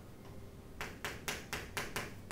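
Chalk striking and stroking a chalkboard as letters are written: a quick run of about six sharp clicks, roughly five a second, starting a little under halfway through.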